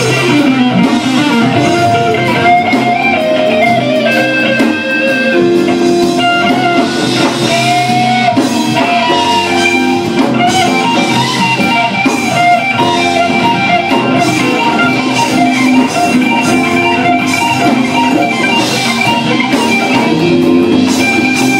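Live blues band playing an instrumental passage: electric guitars with bass and drums, the melody lines bending in pitch, at a steady loud level.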